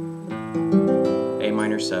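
Acoustic guitar played in open position: single notes plucked one after another in quick succession, ringing together over a held chord.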